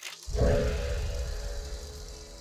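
Channel logo sting: a sudden swoosh, then a deep low boom with a held tone that slowly fades away.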